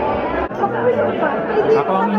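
Chatter: several people talking at once, the words indistinct. A low rumble under it cuts off about half a second in.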